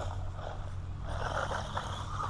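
Small electric Haiboxing RC truck running on dirt at a distance, its motor whine and tyre scrabble faint, growing louder about a second in, over a low steady hum.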